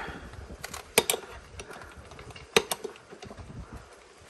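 Hand-pump oil filler can being worked: a few sharp clicks from its pump mechanism, two close together about a second in and one more about two and a half seconds in, with fainter ticks between.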